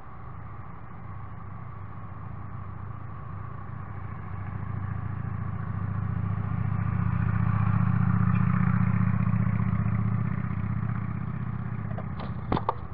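A motor vehicle passing by, its low engine hum swelling over several seconds to a peak about eight seconds in, then fading.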